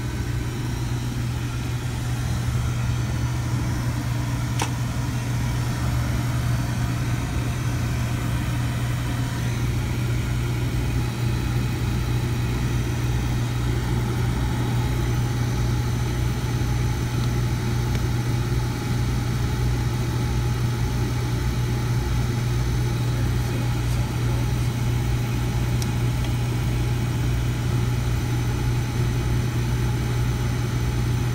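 Oil burner firing steadily: a constant low hum with a rushing blower noise, its flame proven by the Carlin Pro X primary control, so the burner has lit and is running normally. One faint click about four and a half seconds in.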